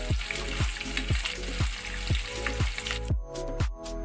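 Chopped onions sizzling in hot oil in a kadhai, under background music with a steady beat of about two strokes a second. The sizzle cuts off suddenly about three seconds in, leaving the music.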